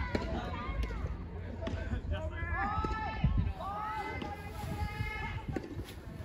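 People's voices calling out across the court during soft tennis play, with a few sharp knocks of ball and racket in the first half.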